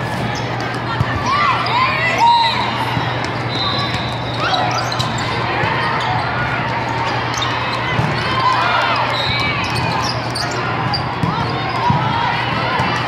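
Indoor volleyball rally: several sharp smacks of the ball being passed and hit, with short squeaks of players' shoes on the sport court, over a steady hubbub of voices and a low hum in a large hall.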